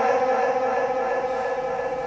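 The held note of a Quran reciter lingering in the PA system's heavy echo after his voice stops: a steady chord of tones at the pitch he was singing, slowly fading.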